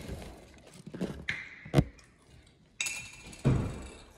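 Handling noises of a takeout meal: a few soft knocks, a sharp click a little before the middle, then a short rustle and a low thud near the end, as the fry tray and the paper-wrapped sandwich are moved.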